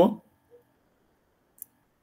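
A man's voice trailing off at the very start, then near silence with one short, faint click about one and a half seconds in.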